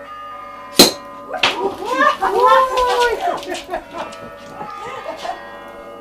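A sword blade strikes the neck of a champagne bottle about a second in, a single sharp crack as the neck and cork are knocked off. Loud excited voices follow for about two seconds.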